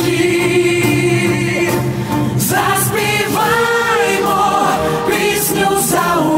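A choir singing a song, the voices holding long notes and sliding between them.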